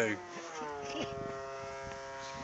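Radio-controlled model airplane's motor heard as a steady buzzing drone. Its pitch slides down over the first half second, then holds steady.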